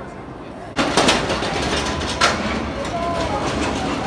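Steel roller coaster train (X2) running along its track, a loud steady rush that sets in suddenly about a second in.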